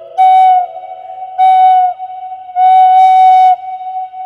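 A Navajo-style Native American flute plays the same note three times, the last held longest, with a slight downward bend at the end of the second. A long echo keeps the note ringing between the phrases and after the last one.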